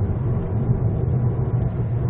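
Steady low rumble of a Hyundai Avante MD driving at a constant speed, heard inside the cabin: engine hum and tyre and road noise.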